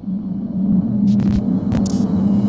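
Electronic logo sting: a steady low drone with two short bursts of glitchy static in the second half.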